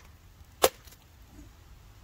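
A wooden baton striking the spine of a Timber Wolf TW1186 Bowie knife once, about two-thirds of a second in: a single sharp knock as the blade is batoned down into an upright log.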